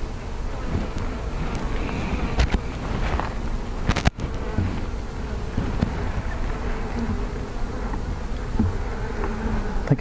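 Honey bees buzzing steadily around an open hive as a frame is lifted and handled, with a couple of sharp clicks a few seconds in.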